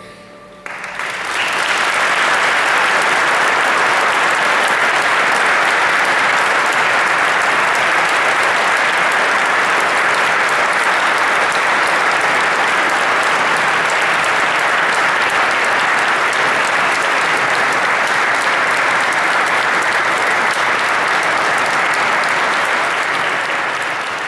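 Audience of several hundred people applauding steadily, breaking out suddenly about a second in as the music ends.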